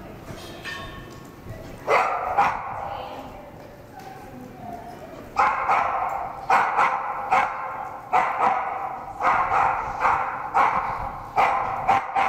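Cardigan Welsh Corgi barking as he works the sheep: two barks about two seconds in, then a run of repeated barks, roughly one or two a second, from about five seconds in.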